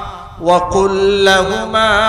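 A man's voice chanting in long, held, melodic phrases, in the style of Quran recitation, with a short break about half a second in.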